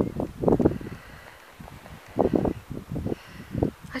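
Wind buffeting the camera microphone in irregular low gusts, with a faint rustle of blowing grass between them.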